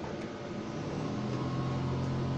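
A steady low machine hum that swells about a second in and then holds, over a faint hiss.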